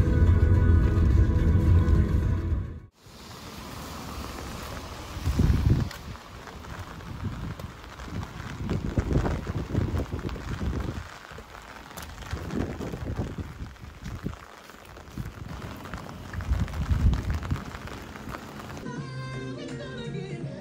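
Rain and wind in a typhoon, with irregular gusts buffeting the microphone. It comes after a loud low rumble mixed with music that cuts off abruptly about three seconds in. Music comes in near the end.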